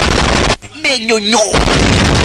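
Heavy gunfire and cannon-like blasts from an action film's sound effects, loud and dense. They break off briefly about half a second in while a voice calls out, then resume near the end.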